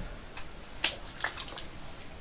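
Witch hazel toner splashed from a bottle into the hands and patted onto the face: a few faint, short wet splashes and taps.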